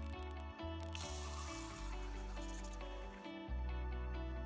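Gentle background music with steady held notes and bass. From about a second in until just after three seconds, a hose spray gun runs water into a plastic cup, heard faintly under the music.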